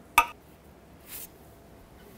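A single sharp metallic clink with a brief ring about a fifth of a second in, followed by a faint, brief rustle about a second in.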